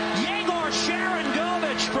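Arena goal horn sounding a steady multi-note chord, with the crowd cheering over it: the signal of a home-team goal.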